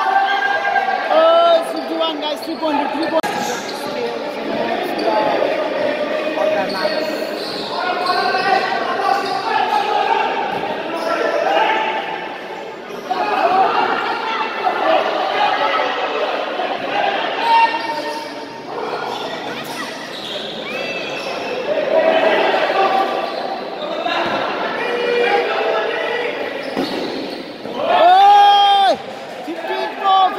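Basketball bouncing on an indoor court during live play, with players and spectators shouting and calling out throughout, echoing in a large hall.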